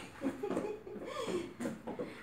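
A woman chuckling softly, a few short bursts of voiced laughter.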